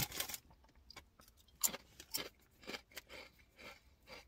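A person chewing a mouthful of crunchy ridged potato chips: a string of short crunches, the strongest a little under halfway through, then fainter ones.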